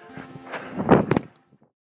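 A slide tackle on grass picked up close on the player's body-worn microphone: a rushing scrape of the body sliding that swells to a loud peak about a second in, with a few sharp knocks at its height, then cuts off abruptly to silence.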